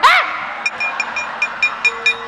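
Wayang kulit keprak, the dalang's metal plates hung on the puppet chest, struck in a quick, even rhythm of about six ringing clinks a second, as the puppets move.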